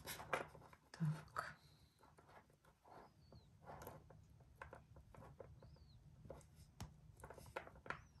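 Faint, scattered small clicks and taps of metal jewellery findings being handled: a brass jump ring and lobster clasp worked with round-nose pliers. A few faint high chirps are heard in between.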